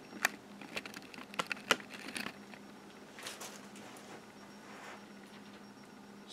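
A handful of light clicks and knocks in the first two seconds, then a couple of faint rustles, from a painter handling his easel and a foil-covered palette.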